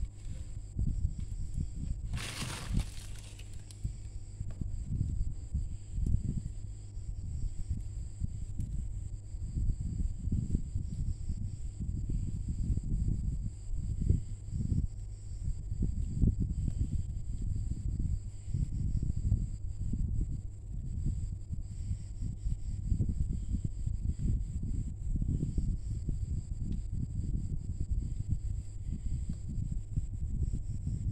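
Low, irregular rustling and bumping of hands working yarn and a crochet hook close to the microphone, over a steady faint high whine. A short hiss comes about two seconds in.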